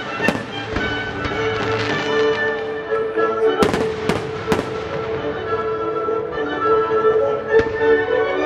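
Aerial firework shells bursting with several sharp bangs, a quick run of them about three and a half to four and a half seconds in and another near the end, over a live baroque orchestra playing sustained chords.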